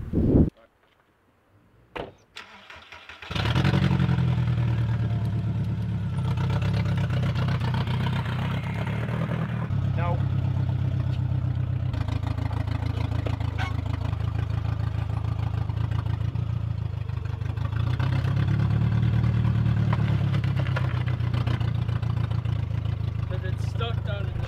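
A car engine starts about three seconds in and settles into a steady idle, running a little harder for a few seconds later on before easing back.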